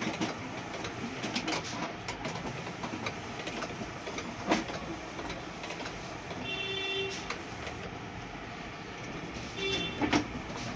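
Epson L8050 six-colour inkjet printer running through a photo print: steady mechanism noise with scattered clicks, and a short motor whine about two-thirds of the way through and again briefly near the end.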